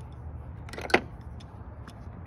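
A single loud, sharp metallic clank about halfway through, with a small click near the end: hand tools being handled at a tool box.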